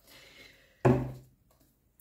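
Faint rustle of a tarot card deck being picked up, then a short hum-like vocal sound from the woman about a second in.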